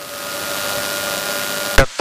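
Steady rushing cabin noise of a Cessna 210 in flight, engine and airflow heard as an even hiss with a faint steady hum, swelling slightly.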